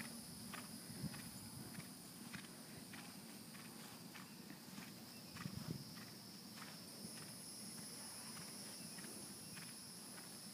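Faint, evenly spaced hoofbeats of a distant ridden horse moving on grass, about one beat every 0.6 seconds, under a steady high-pitched whine.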